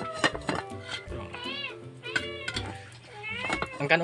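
A hungry cat meowing three times, each call rising and falling in pitch, with light metallic clinks from an aluminium pot lid near the start.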